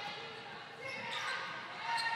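Volleyball rally on an indoor court: a few short squeaks from players' shoes and light contacts of the ball over a reverberant arena hum.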